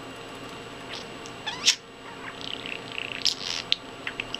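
Budgerigar calling in short, sharp, high chirps and squawks. The loudest is a rising squawk about a second and a half in, followed by a warbling chatter.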